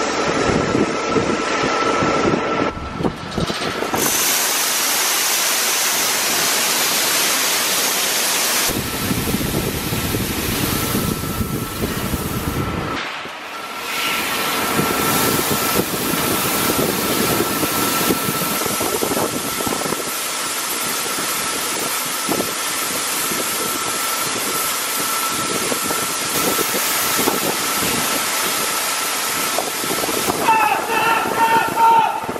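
Shelled corn pouring from an overhead load-out bin into a hopper-bottom grain trailer: a continuous rushing hiss of falling kernels with a faint steady high-pitched whine running underneath.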